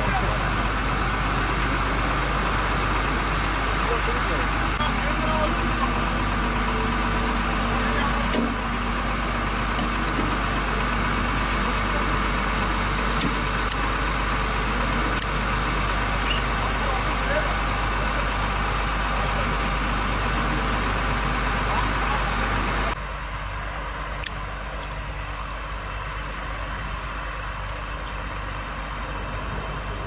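Vehicle engines idling with a steady hum, with people talking in the background; the hum drops away sharply about three quarters of the way through.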